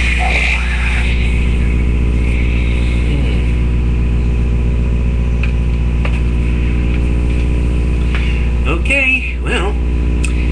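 A loud, steady low hum made of several even tones, with a short warbling sound about nine seconds in.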